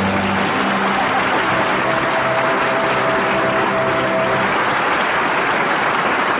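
Studio audience applauding at the end of the play, a steady wash of clapping, with the orchestra's closing sustained notes under it that fade out about two-thirds of the way through.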